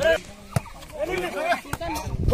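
Men's voices calling out during a volleyball rally, with a few sharp smacks of hands hitting the ball, the clearest about half a second in and just before the end.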